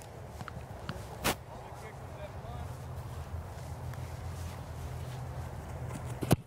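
Outdoor ambience on an open field: a steady low rumble, with faint ticks and one sharp knock about a second in.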